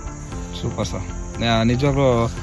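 A man's voice over background music, with crickets chirping.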